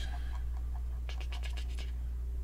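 Steady low hum, with a quick run of about eight small clicks starting about a second in: a computer mouse's scroll wheel being turned.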